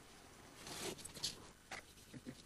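Faint scraping swish of a trowel spreading adhesive mortar onto an insulation board, followed by a few light clicks.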